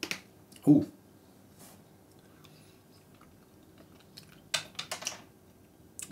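A man eating a piece of sapodilla: a short "uh" just under a second in, then a quick run of four or five wet mouth clicks and smacks of chewing near the end.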